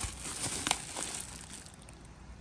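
A freshly vacuum-sealed plastic bag and disposable plastic gloves crinkling as the bag is handled. Two sharp crackles come about two-thirds of a second apart near the start, then the rustling grows quieter.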